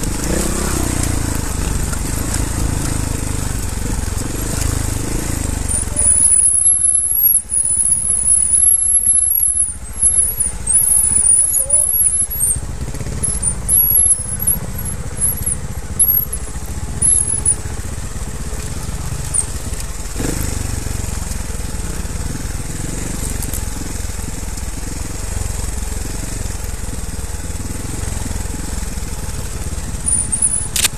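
Trials motorcycle engine running at low revs on a steep, rough downhill trail, with knocks and rattles of the bike over roots and rocks. A high-pitched squeal comes and goes from about six seconds in to the middle.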